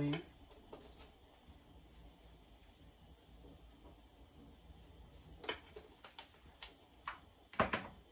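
Quiet kitchen room tone with a few light taps and clicks as seasoning is shaken from a plastic spice bottle onto a plate, then one sharper knock near the end as a bottle is put down on the countertop.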